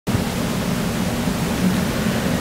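Loud, steady hiss across the whole range, with a faint low hum underneath: electronic noise on the recording.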